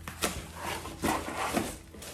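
Cardboard box and packing being handled and rubbed while a package is taken out of a shipping carton, in three or four short scraping rustles.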